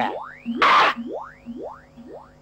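Comic film sound effect: a falling swoop, a short hissing burst, then a run of quick rising 'boing'-like swoops about half a second apart, each fainter than the last.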